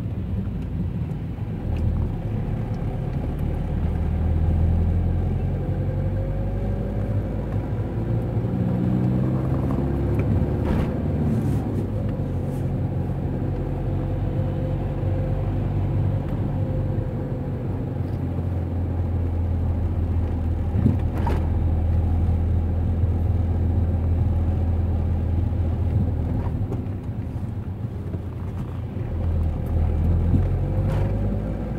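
A car being driven, its engine and tyres giving a steady deep rumble, with the engine note rising and falling as the car speeds up and slows. A few brief clicks or knocks break through.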